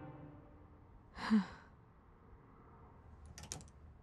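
A woman sighs once about a second in, a short breathy exhale. Near the end there are a few light clicks of clothes hangers knocking on a closet rail.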